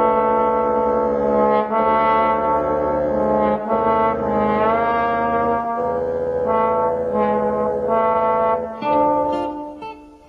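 A brass instrument playing a slow melody of held notes, one note sliding upward about halfway through, dying away near the end.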